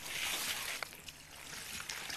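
Soft rustling of coarse woollen cloth being handled and fibres picked from it, loudest in the first half second, with a faint tick near the middle.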